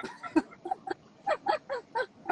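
A person laughing in a run of short, honking bursts, about four a second, each falling in pitch.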